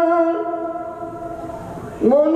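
A man's voice, sung through a hand microphone, holds one long steady note that fades away over the second half.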